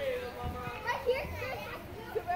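Children's voices: several kids talking and calling out to each other as they play, high-pitched and overlapping.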